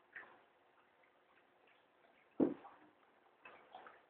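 A few scattered knocks and clicks, the loudest a single sharp knock about two and a half seconds in, with two weaker ones near the end.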